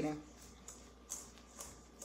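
Faint scraping of a utensil stirring batter in a metal mixing bowl: a few soft, short scrapes.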